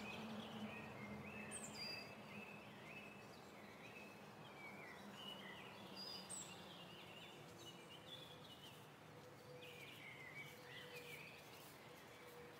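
Faint birdsong: several birds chirping and warbling in short, repeated phrases over a quiet outdoor background.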